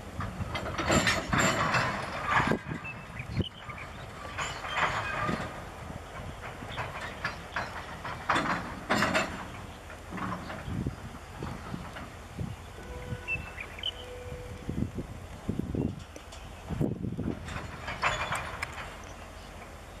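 Freight wagons and a diesel-electric locomotive moving slowly during shunting, with irregular bursts of clanking and rattling from the wheels and couplings over a steady low rumble.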